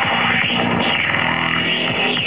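Psytrance dance music playing loud: a driving electronic beat under synth sweeps that rise and fall over and over.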